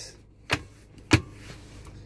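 Two short, sharp clicks from the plastic centre-console storage compartment of a Mercedes-Benz A-Class being handled, the second louder.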